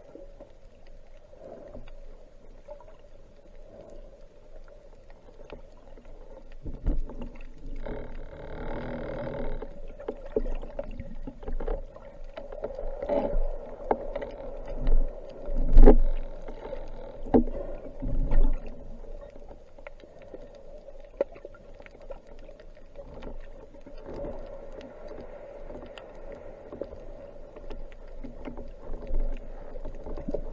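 Underwater sound picked up by a diver's camera: a steady hum with the rush and bubbling of water moving past the housing. The loudest surge of bubbling comes about halfway through, as a cloud of bubbles sweeps past the camera.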